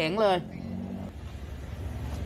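A motor vehicle's engine running with a steady low rumble, after the end of a spoken word at the start.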